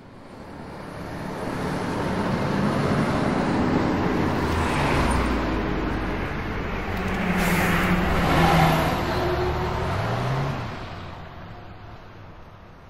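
Road traffic: vehicles passing, the noise swelling over the first few seconds, loudest about two thirds through, and fading away near the end.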